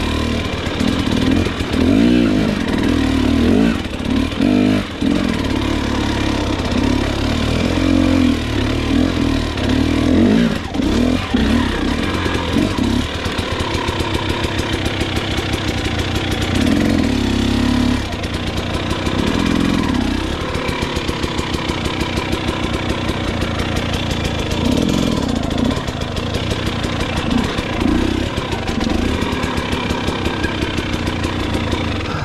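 KTM 300 XC's two-stroke single-cylinder engine revving up and down hard for about the first twelve seconds, then running at low revs with short throttle blips every few seconds.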